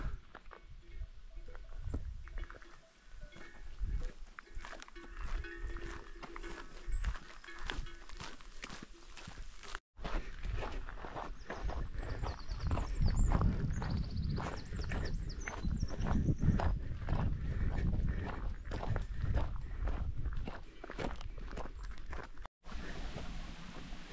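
Hiker's footsteps on a dirt track with wind rumbling on the microphone; a cow lows once, about five seconds in. The sound drops out briefly twice.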